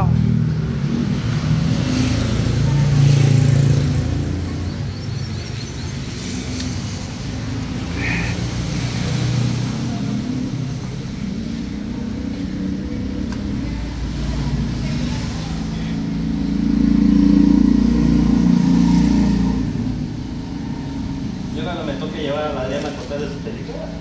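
Road traffic on the street outside: a low engine rumble from passing vehicles that swells twice, early and again in the second half.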